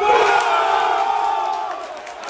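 Football spectators yelling: a long drawn-out shout that starts suddenly, holds for about a second and a half, then falls slightly in pitch and fades.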